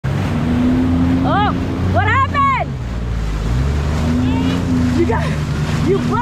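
Jet ski engine running steadily under way, with water spray and wind rushing. Voices call out over it a few times.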